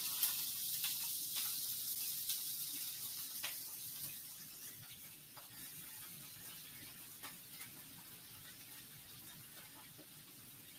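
Broccoli rabe sizzling in hot garlic oil in a frying pan, with scattered small pops and crackles. The sizzle is loudest as the greens go in and fades steadily.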